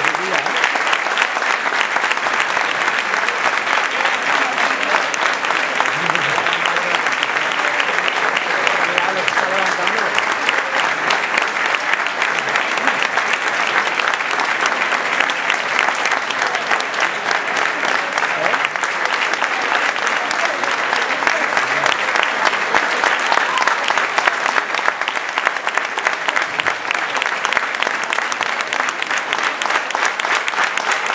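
A concert audience applauding: many hands clapping in a dense, steady patter that keeps up at the same level throughout.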